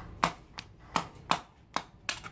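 Meat cleaver chopping a scorched pig's leg on a wooden chopping board: about five sharp chops, two to three a second.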